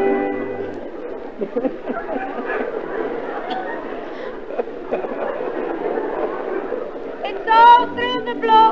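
A held chord from the band dies away in the first second. A theatre audience's noise, a mix of many voices, follows on an old live recording. Near the end a woman's singing voice comes in loudly with a wide vibrato.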